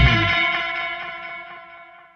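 Final electric guitar chord ringing out with distortion and effects, steadily fading away once the band stops, dying out near the end.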